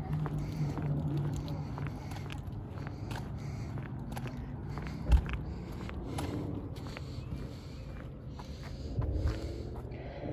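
Footsteps on pavement, with a steady low hum during the first couple of seconds and a single thump about five seconds in.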